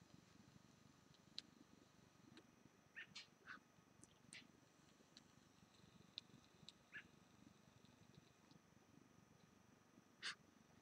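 Near silence, with a few faint, short high-pitched chirps scattered through it.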